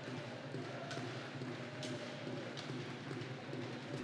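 Ice hockey arena ambience during play: a steady crowd murmur with a few faint taps of stick and puck on the ice.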